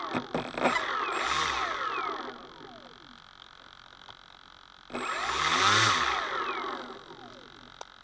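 Electric motor and propeller of a radio-controlled model aircraft revved up and back down twice, the pitch rising and falling each time over a high whine. The model's electronic speed controller (ESC) is faulty.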